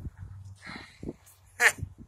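A short, high-pitched vocal cry that climbs steeply in pitch, about one and a half seconds in, with fainter scuffing noises before it.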